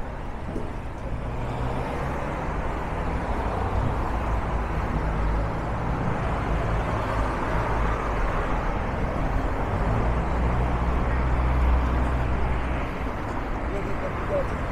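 Urban street traffic: cars passing on the road beside the sidewalk, with a low engine rumble that builds to its loudest near the end and then drops away.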